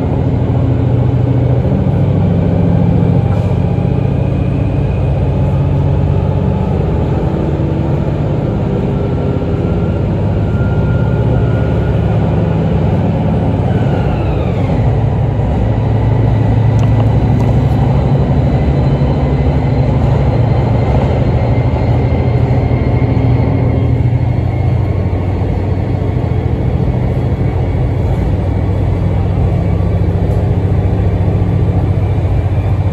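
ET122 diesel railcar heard from inside the passenger cabin, running at speed through a tunnel: a loud, steady rumble of engine, wheels and rails. Faint whining tones ride on top, one falling in pitch about halfway through.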